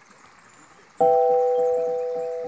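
Faint background noise, then about a second in background music starts suddenly with a bell-like chord that is held steady.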